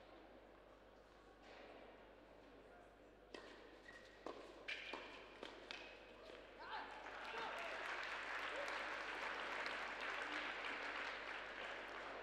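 Tennis ball being struck by rackets and bouncing on the indoor court in a short exchange, a handful of sharp hits about three to seven seconds in. Then audience applause builds and carries on steadily.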